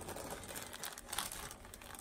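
Clear plastic bag crinkling as it is lifted and handled: an irregular run of soft crackles.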